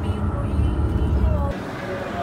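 Low, steady rumble of a coach in motion heard from inside the passenger cabin, cut off abruptly about one and a half seconds in.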